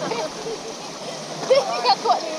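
River water rushing steadily around an inflatable raft on a stretch of rapids. A woman's voice and laughter come in near the end.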